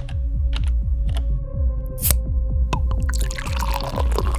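Electronic logo jingle with a steady low beat of about four pulses a second, overlaid with sharp clicks and liquid-pouring, bubbling sound effects as the animated cup fills, building into a bright wash of noise in the last second.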